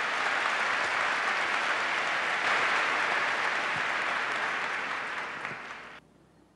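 Large audience applauding, a steady dense clapping that tapers off near the end.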